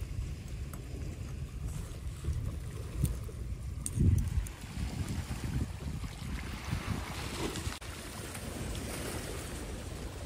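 Wind buffeting the phone's microphone in uneven gusts, the strongest about four seconds in, over small waves washing on a stony shore that grow more audible in the second half.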